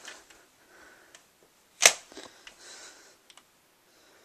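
Handling noise: one sharp click a little under two seconds in, with a few faint ticks and a soft rustle after it.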